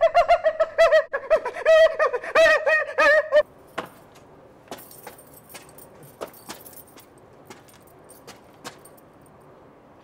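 A man's loud, high-pitched, wavering vocal outburst lasts about three and a half seconds, then stops suddenly. Afterwards there is only a low background with a few faint, scattered clicks.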